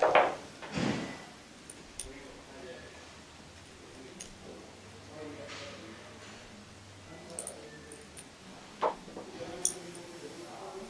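Small metal clicks and clinks of hand tools and small screws being worked out of the aluminum retaining ring over the pump's oil seal. There are two louder sudden sounds in the first second and a couple of sharp clicks near the end.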